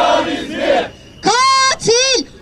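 Protest crowd chanting a slogan in unison, breaking off just before halfway. About a second and a quarter in, a single high-pitched voice calls out with long drawn-out syllables.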